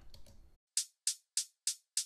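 Programmed hi-hat from a beat playing solo and dry, with its reverb bypassed. The hits are short, high ticks about three a second, starting about three-quarters of a second in.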